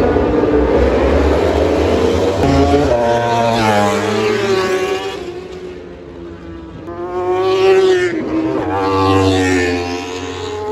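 Racing motorcycles pull away from the starting grid for the warm-up lap and pass by, their engine notes repeatedly climbing and dropping. The sound eases off around six seconds in, then swells again as more bikes go past.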